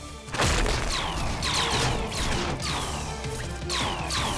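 Cartoon action soundtrack: a crash about half a second in, then a run of quick falling zaps, about two a second, like laser blasts, over music and a low rumble.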